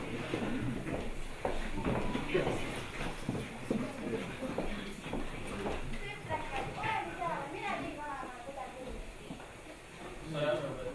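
People speaking on a stage, with high-heeled footsteps on the wooden stage floor in the first few seconds.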